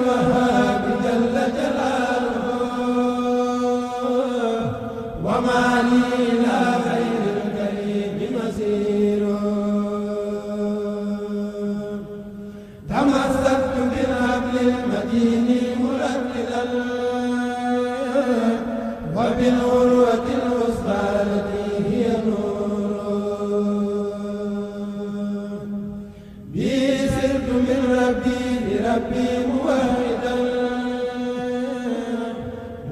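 A kourel of young men chanting a khassida, a Mouride Sufi devotional poem, as a group through microphones, without instruments. It moves in long, held phrases with a brief break about every six to seven seconds.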